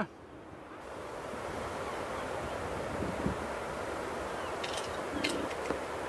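Steady rushing wind on the microphone mixed with the wash of surf, with a few faint clicks near the end.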